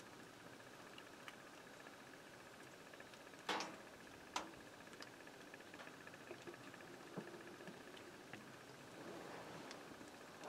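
Near silence with a faint steady hiss, broken by a few soft clicks and a brief rustle about three and a half seconds in.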